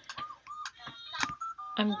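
A few sharp computer mouse clicks, about four in two seconds, with faint short high-pitched tones between them. A woman's voice starts a word at the very end.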